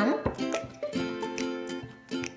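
Background music: a plucked string instrument, acoustic guitar or ukulele-like, playing a few notes that ring and fade.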